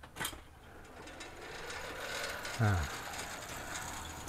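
Electric three-wheeled cargo motorcycle moving off: a sharp click, then its motor and gears whirring, growing louder and rising slightly in pitch over a couple of seconds.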